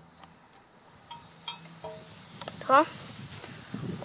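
Faint scattered ticks and light handling noises from a small box of seeds being handled, with a short voiced sound from the person about three seconds in.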